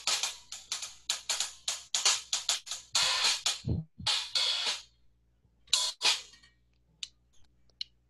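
Drum-kit hi-hat played with sticks: a quick run of short, crisp closed strokes, then a few longer open sizzles, with one brief low thump among them, thinning to a few light taps near the end.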